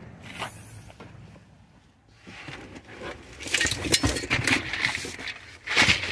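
Footsteps, then scraping, rustling and knocking as things are handled and moved around, loudest near the end.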